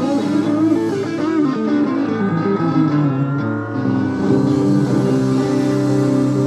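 Live rock band playing an instrumental stretch: electric guitar lines over bass and drums, with wavering bent notes about a second in and a long note sliding slowly upward after that. Taped from the audience.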